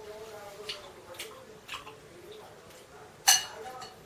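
A metal spoon clinks once against a bowl about three seconds in, with a short ring, after a few faint clicks.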